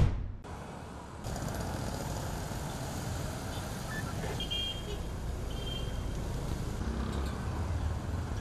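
Street sound with car engines running and vehicles moving: a steady low rumble with road noise. A short swell of sound opens it and fades within half a second.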